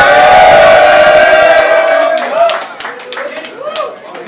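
A man's voice holding one long sung note that fades out just over two seconds in, as the backing beat drops away; then the crowd claps and cheers.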